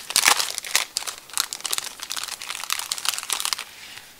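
Plastic packaging crinkling in the hands as a wrapped packet is handled and opened, a quick irregular run of crackles that dies away near the end.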